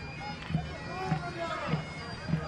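A steady droning tone over a dull beat about every half second, with faint voices underneath.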